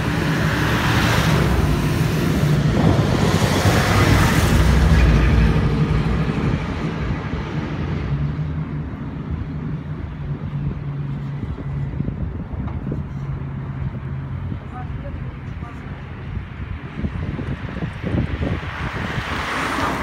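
Cars and a truck driving past on a street, loudest as they go by in the first six seconds, then a steadier engine hum with traffic noise, swelling again near the end.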